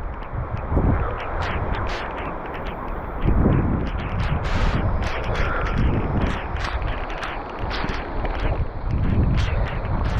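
Heavy rain and strong, gusty wind buffeting the microphone, the noise swelling and easing with each gust.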